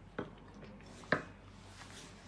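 Two soft, short clicks over quiet room tone as people sip champagne from stemmed glasses.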